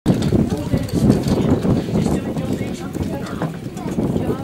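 Hoofbeats of a harness-racing horse close by, over indistinct voices of people talking.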